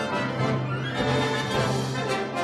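Chamber orchestra playing, with violins bowing a sustained passage.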